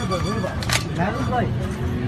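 A single sharp crack from an air rifle firing at the balloon board, about three quarters of a second in.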